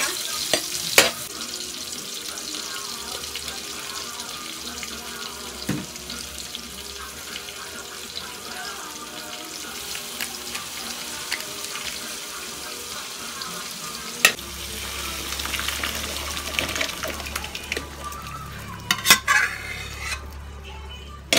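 Ginger, garlic, onion, tomato and dried anchovies sautéing in oil in a pan: a steady sizzle, with stirring and a few sharp knocks of a utensil against the pan. About two-thirds of the way through, a low steady hum joins the sizzle.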